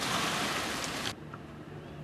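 Small waves lapping and washing over a shallow lake shore, a steady rush of water that cuts off suddenly about a second in, leaving a much quieter background with a faint low hum.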